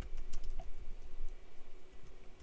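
A few light clicks and taps in the first half second, over a low steady hum.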